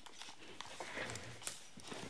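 A quiet pause with faint rustling and a few soft clicks as over-ear headphones are put on and settled.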